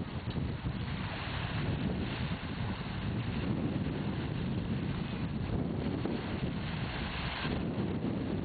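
Wind buffeting the microphone: a steady, uneven low rumble with hiss above it, rising and falling slightly with the gusts.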